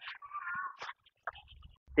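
A short, wavering animal call, about half a second long, followed by a few faint clicks.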